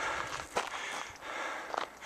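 Footsteps of a hiker climbing on a gravel trail and railroad-tie steps, a steady crunching with a few sharper steps.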